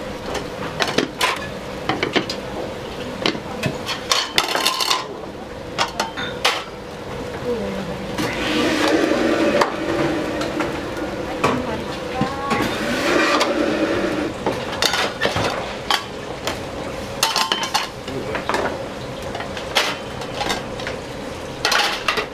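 Small metal donburi pans, bowls and utensils clinking and clattering against one another on a gas range, in many sharp, irregular knocks over a steady kitchen hum.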